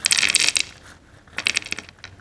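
Crunchy coated dried green peas (Tong Garden Mexican Taco Green Peas) poured from their snack packet, clattering onto a plate. They fall in two bursts of rapid small ticks: one for about half a second, then another after a short gap.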